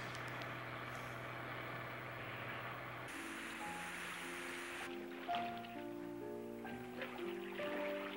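For the first three seconds, the steady low hum of a car running, heard from inside the cabin. Then slow background music of held notes begins.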